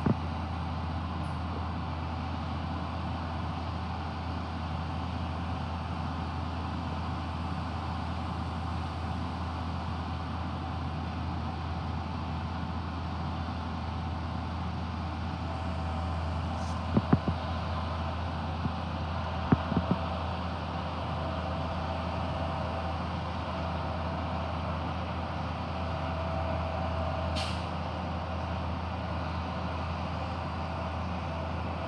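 Front-loading garbage truck's diesel engine running steadily, heard from a distance. About halfway through a thin steady whine joins it as the forks lift a dumpster. A few sharp knocks come around the middle.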